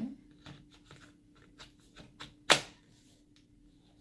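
Lenovo ThinkPad T430 battery pack being pushed into its bay at the back of the laptop: small plastic clicks and scrapes, with one loud sharp click about two and a half seconds in.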